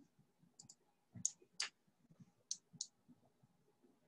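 A handful of faint, sharp clicks at an irregular pace, some in quick pairs, the two loudest a little over a second in: computer clicks from a mouse and keys.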